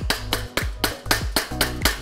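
A hammer striking a block of wood held against a bicycle's bottom bracket in quick repeated knocks, about five a second, to drive a stuck seat post out of the frame. Background music plays throughout.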